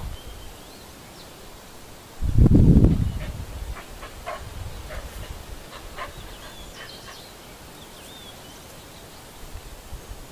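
Birds chirping with short high calls, broken about two seconds in by a loud low rumble that lasts about a second and a half.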